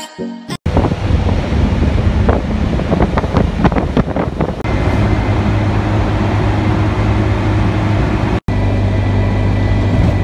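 A brief snatch of flute-like music, then a sudden cut to loud, steady engine and road noise from riding in a vehicle through traffic, with a low hum that sets in about halfway. The sound breaks off for an instant near the end as the footage cuts.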